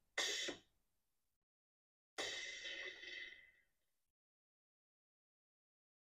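Ninja Thirsti drink system's CO2 canister releasing gas to carbonate the water: a short hiss, then about two seconds later a longer hiss of about a second and a half that fades out.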